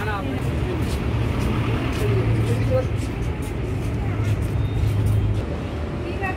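Busy outdoor street-market ambience: indistinct crowd chatter over the steady low rumble of road traffic, with a vehicle engine running close by that fades a little near the end.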